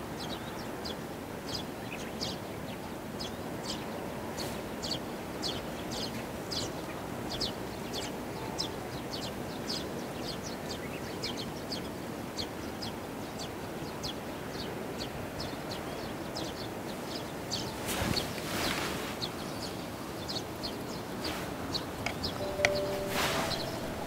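Small birds chirping again and again over a steady hiss of falling rain, with a brief louder whoosh about three-quarters of the way through.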